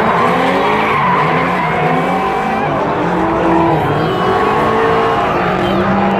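Car engine revving up and down hard while its tires squeal and slide through a drift.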